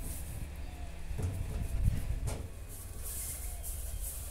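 Hands kneading dough on a floured stainless-steel table: soft pressing thuds and rubbing, a few of them a second or two in, over a steady low rumble.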